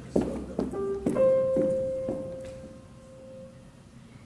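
Grand piano playing a short run of notes, ending on one held note that fades away.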